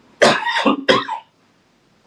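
A man coughing several times in quick succession, lasting about a second.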